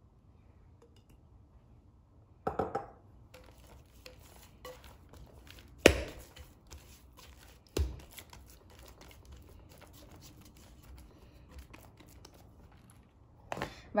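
A hand rubbing oil over a ball of bread dough in a glass bowl: soft sticky rubbing and small clicks, with a few sharp knocks of the glass bowl, the loudest about six seconds in.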